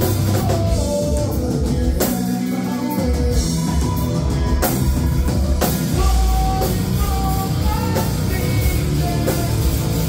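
A live rock band playing loud, with electric guitar and a drum kit hitting steadily.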